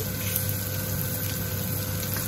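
Leeks frying in hot bacon fat in a non-stick pan, a steady sizzle, over the constant hum of an air fryer's fan.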